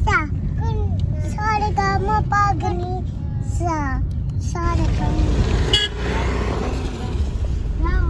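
A young child's voice chattering inside a moving car, over the steady low rumble of road and engine noise in the cabin; the child falls quiet after about five seconds, leaving the rumble and a hiss of road noise.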